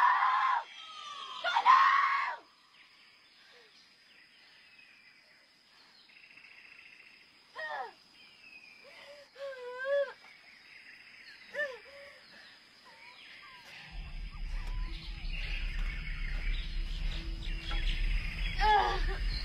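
A woman screaming and crying out in distress, two loud cries in the first two seconds, then a few quieter sobbing cries over faint bird calls. Music with a low bass drone comes in about fourteen seconds in.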